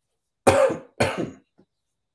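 A person clearing their throat twice, in two short bursts about half a second apart.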